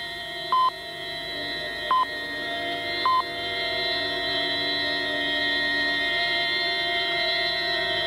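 Short electronic monitor beeps, one about every second and a quarter, three in the first three seconds and then stopping, over a sustained electronic drone of steady tones that slowly swells.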